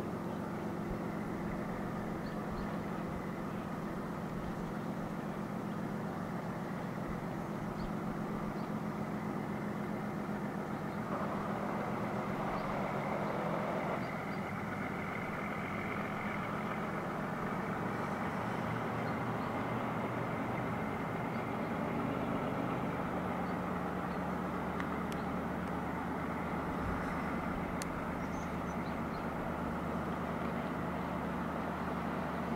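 CSX diesel-electric locomotive working hard at full throttle (notch 8), its engine a steady, heavy drone as it pulls its train toward the listener, its pitch shifting slightly about two thirds of the way through.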